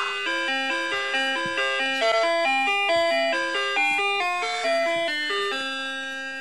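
A simple electronic tune of bell-like notes, about four notes a second, playing at an even pace.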